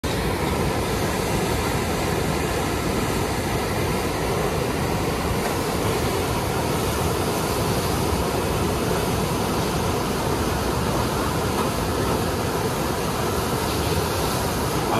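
Fast river water rushing steadily through the Eisbach standing surf wave, a constant heavy rumble of white water with no breaks.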